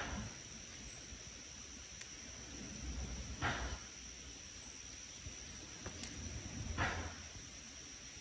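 Steady high-pitched insect drone, with two brief soft hisses about three and a half and seven seconds in.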